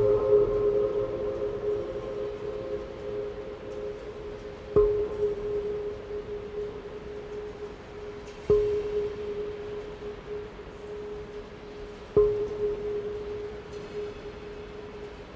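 Large Korean earthenware jars (onggi) played as percussion: four single strokes a few seconds apart, each ringing on as a steady mid-pitched hum that slowly fades. The long tail comes from the reverberation of a steel-walled dome tank, with no effects added.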